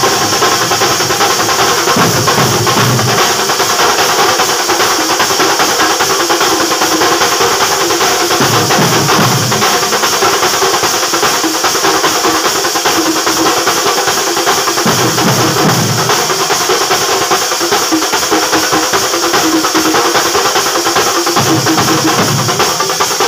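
A Kerala thambolam percussion ensemble playing loud and without pause. Large rawhide-headed drums are beaten with sticks under a continuous clash of brass hand cymbals, and deeper drum passages swell in about every six seconds.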